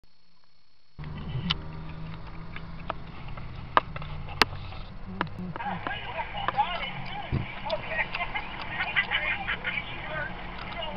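Chatter of many voices, the audio of a recorded video played back through a mobile phone's small speaker, starting a little past halfway. Before that there is only a low steady hum with a few sharp clicks.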